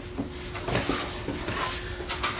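Cardboard parts box being handled and lifted, with a few light knocks and scrapes from the box and its flaps.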